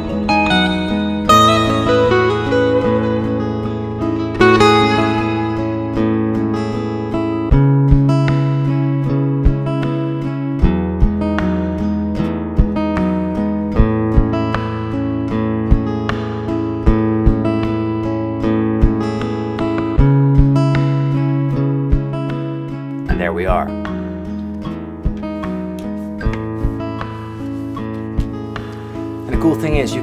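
Fender Acoustasonic Stratocaster playing improvised lead lines over its own looped layers. The loops are a repeating bass-and-chord progression and a body-percussion groove of sharp taps on the guitar's body, given plenty of reverb.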